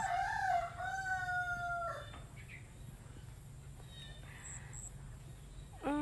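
A rooster crowing once: a single long call that ends about two seconds in.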